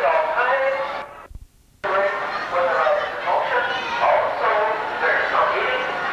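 Sounds of an operating carousel: pitched, changing tones typical of a carousel band organ, mixed with voices. The sound cuts out abruptly for under a second, about a second in, then resumes.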